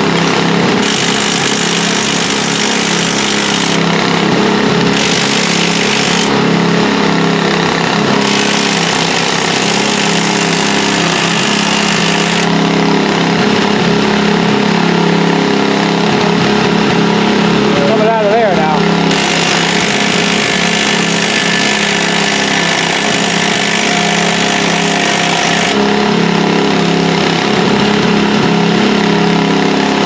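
Engine of work machinery running steadily throughout, with a loud hissing noise that comes and goes in stretches of a few seconds.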